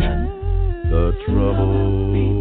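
A cappella gospel vocal group singing in harmony without instruments, a deep bass voice holding low notes under the upper parts, with short breaks between phrases.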